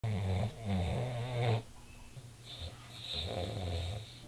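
A man snoring in his sleep. There is a loud snore for the first second and a half, briefly broken once, then a quieter snore near the end.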